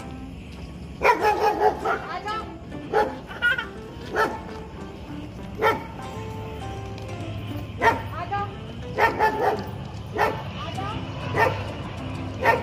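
A street dog barking and yipping in short calls, a quick run of them about a second in and then single ones every second or so, over steady background music.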